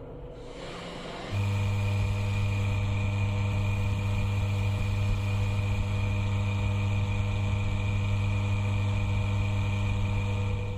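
Electric motor of a bench polishing machine with a foam polishing pad, running with a steady hum; it comes in abruptly about a second in.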